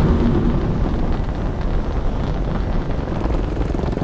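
A steady low rumble of the kind a large engine or machinery makes, with a short low hum near the start.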